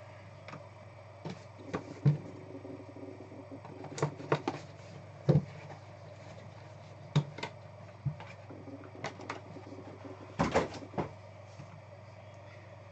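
Handling noise of trading-card packaging: thick clear plastic card holders and a cardboard card box knocking and clicking on a tabletop as they are moved and opened. About a dozen separate sharp clacks, loudest about two seconds in, around four to five seconds and near ten seconds, over a steady low hum.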